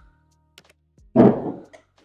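A single loud, dull thump about a second in, over faint background music.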